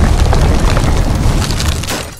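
Loud, low rumble of an explosion-like blast with dense crackling of debris, easing off near the end and cutting off abruptly.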